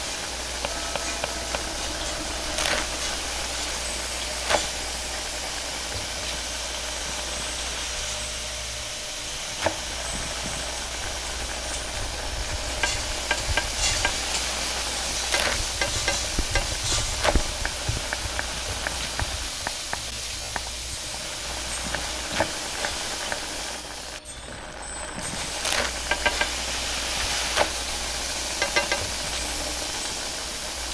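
Stir-frying in a carbon-steel wok over a high-flame gas wok burner: a steady hiss of burner and sizzling food, with the metal ladle clanking and scraping against the wok at irregular moments.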